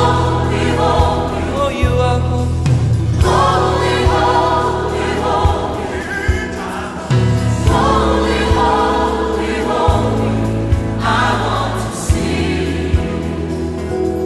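Background music: a choir singing a Christian worship song in phrases every few seconds, over a sustained bass line and a steady beat.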